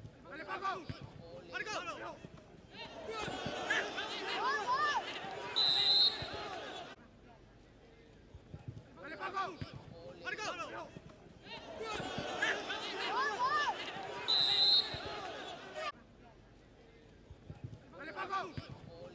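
Football pitch sound: several voices shouting over a goalmouth scramble, cut through by a short, high referee's whistle blast. The same stretch of shouts and whistle plays twice, as the replay runs it again.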